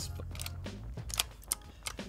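PBT keycaps being pressed onto a keyboard's optical switch stems, giving about five separate short plastic clicks.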